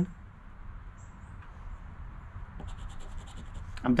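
Faint scratching of a scratch-off lottery ticket's coating with a poker-chip scratcher: a brief scrape about a second in, then rapid short strokes from just past halfway.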